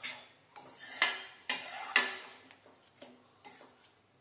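A metal spoon stirring gooseberries in sugar syrup, knocking and scraping against a stainless steel pan with a ringing clink about twice a second.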